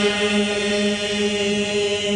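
A voice chanting Arabic qasida verse, holding one long steady note.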